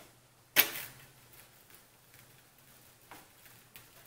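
A single sharp knock about half a second in, as the hot-wire foam cutter's bow, templates and steel weight are handled. After it the workshop is quiet, with a faint low hum and a few soft ticks.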